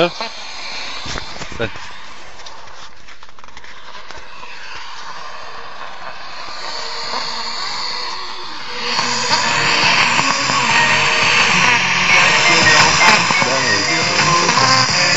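Portable FM radio on a weak station: noisy, hissy reception at first. About nine seconds in, the broadcast comes up louder, with voice and music from the radio's speaker.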